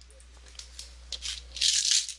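A low steady electrical hum with a few faint clicks, then a short, louder hissing rustle near the end.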